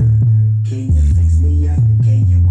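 Hip hop track played loud through two 8-inch Jaycar Response subwoofers in a sealed MDF box, driven by a Sansui amp. Heavy sustained bass notes change pitch about once a second under a lighter beat.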